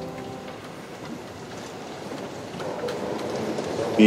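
The last organ chord dying away in a large reverberant church. Then a steady hiss of church room noise with a few faint clicks and knocks.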